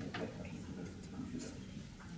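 A sharp click just after the start, then a few fainter ticks, over a low steady hum.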